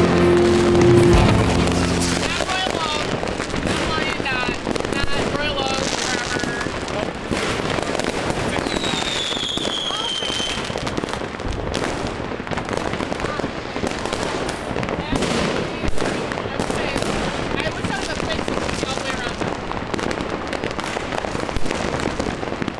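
Many consumer fireworks going off across a city, a dense, continuous crackling and banging with voices shouting in among it. A single falling whistle sounds about nine seconds in, and one louder bang stands out near sixteen seconds.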